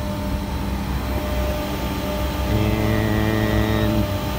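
Steady mechanical hum of running machinery. About two and a half seconds in, a second, deeper motor hum starts and holds steady.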